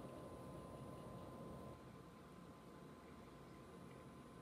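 Near silence: faint room tone with a thin steady whine, a little quieter after about two seconds.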